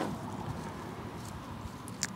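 Faint, steady background noise with no distinct sound events, and a small click near the end.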